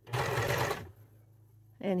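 Electric sewing machine running a short burst of zigzag stitching, under a second long, then stopping.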